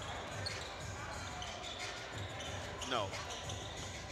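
Basketball dribbled on a hardwood gym floor, a run of low bounces about two to three a second.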